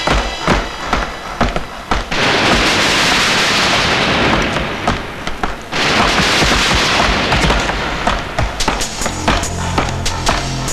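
Action-film soundtrack: background music under rapid gunfire, many sharp shots with two long dense bursts through the middle.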